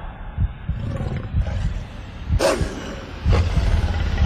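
A deep, rumbling roar from a movie trailer's sound effects, with a sharp hit about two and a half seconds in and a second one under a second later.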